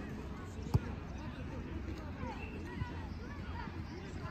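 A single sharp thump of a football being kicked, about a second in, with a fainter knock later, over distant children's shouts and a steady low rumble.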